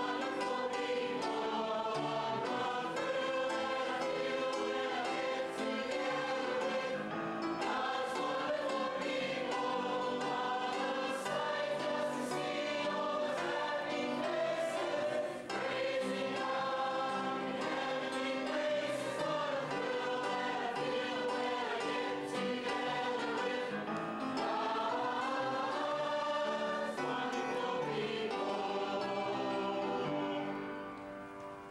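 A group of voices singing together in a steady, unbroken song, with a momentary dip in loudness about halfway through.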